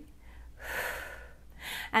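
A woman breathing hard during a leg-lift exercise: one long, audible breath about half a second in, then a shorter one just before she speaks again.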